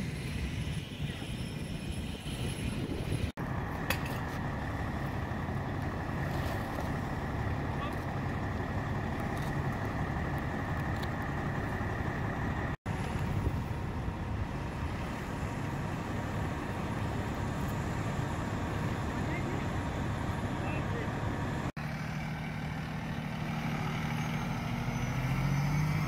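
Fire apparatus diesel engines idling with a steady low rumble. Near the end, one engine's pitch rises as a rescue truck pulls off and drives past.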